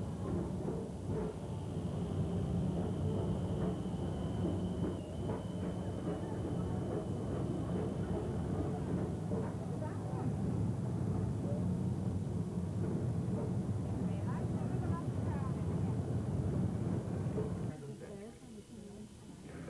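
WEDway PeopleMover car running along its track: a steady low hum, with a thin high whine over the first half, under people's voices.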